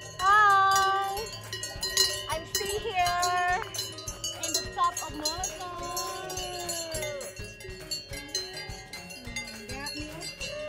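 Cowbells worn by a herd of grazing cows, clanking and ringing irregularly, several bells of different pitches at once. A few short gliding calls sound over them.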